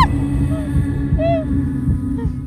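A low, throbbing rumble with a steady hum from the trailer's dramatic soundtrack, over which a woman gives two short strained cries, about half a second and about a second and a quarter in.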